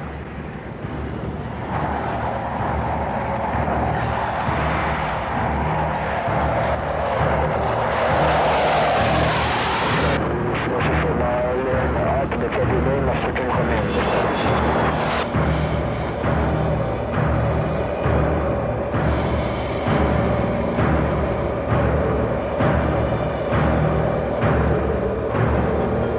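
Dramatic orchestral soundtrack music driven by a steady pounding timpani and drum beat. Over the first ten seconds a rising rush of jet aircraft noise builds over it and cuts off abruptly.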